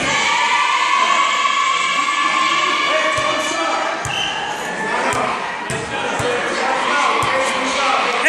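A basketball bouncing on a wooden gym floor, several separate thuds spread through the second half, with voices in the gym around it.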